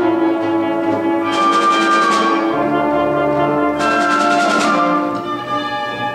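Youth symphony orchestra playing a loud passage of held chords, with two loud surges, the first about a second and a half in and the second about four seconds in, each dying away over about a second.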